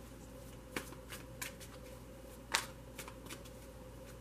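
Tarot cards handled and shuffled in the hand: a few soft card clicks, with one sharper snap about two and a half seconds in.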